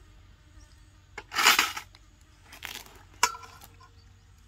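Kitchen things being handled during food preparation: a short noisy burst, the loudest sound, then a weaker one, and about three seconds in a sharp clink followed by a faint ringing tone.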